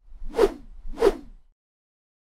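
Two whoosh sound effects about half a second apart, dying away by about a second and a half in. They accompany end-screen graphics sliding into view.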